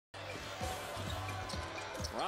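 Basketball dribbled on a hardwood court, bouncing about twice a second, over steady arena background noise.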